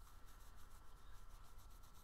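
Near silence: faint room tone with a thin, steady high tone running underneath.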